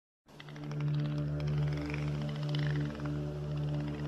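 Dolphins whistling and clicking underwater over a steady, sustained ambient music drone that fades in at the start. The whistles glide up and down in pitch.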